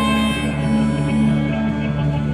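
Live rock band playing: electric guitar and bass guitar holding long, steady notes.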